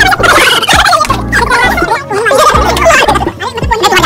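Several men's voices laughing and hollering in quick, wavering bursts, over background music with a low bass line.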